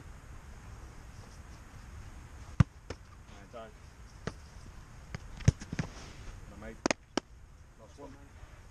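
A run of sharp thuds from a football being volleyed and caught during a goalkeeper handling drill. The two loudest come about two and a half and five and a half seconds in, with lighter knocks around them and a quick pair near the end.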